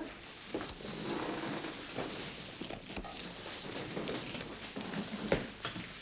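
Bags being picked up and handled, with faint knocks, rustles and footsteps, over a steady hiss.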